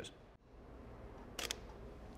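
Camera shutter firing once, heard as a quick double click about a second and a half in, over faint room hum.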